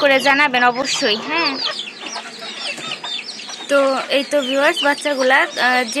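A brood of young chicks peeping and cheeping continuously, many short wavering calls overlapping.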